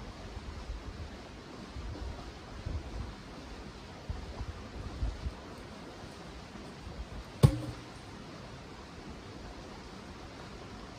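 Logs being shifted off a log wall: faint low thumps, then one sharp wooden knock about seven and a half seconds in as a log is dropped.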